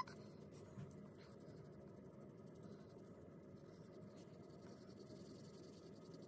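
Faint strokes of an alcohol marker's brush tip rubbing over paper as an area is coloured in, with a few soft ticks.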